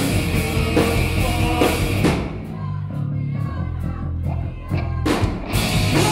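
A live rock band playing loudly on drums, electric bass and guitar. About two seconds in, the cymbals and high end drop away to a low, bass-heavy passage with sparse sharp hits, and the full band comes back in about a second before the end.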